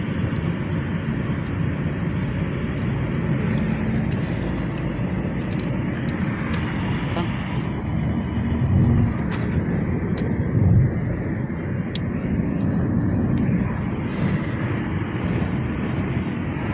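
Steady road noise inside a car cabin at highway speed: a low rumble of tyres and wind, with two brief louder low swells near the middle.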